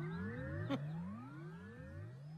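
A comic sound effect: a run of overlapping rising whistling glides, a new one starting about every half second, each sweeping from low to high pitch. A brief click comes about three-quarters of a second in.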